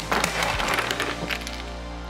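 A tower of wooden Jenga-style blocks collapsing onto a coffee table: a burst of clattering blocks at the start that dies away over about a second and a half.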